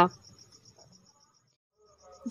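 A voice breaks off at the start, and a faint, fast, high-pitched pulsing runs on for under a second before it fades into near silence.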